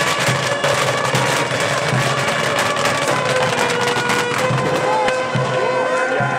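Fireworks set into a spiked drum crackling as they spray sparks, a dense rapid crackle that thins out in the second half, with music running underneath.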